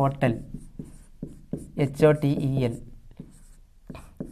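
Dry-erase marker writing on a whiteboard in short strokes, with a man speaking in short phrases; near the end the marker is heard alone as a few faint scratches and taps.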